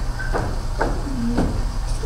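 A few soft footsteps on a wooden stage, about half a second apart, over a steady low hum.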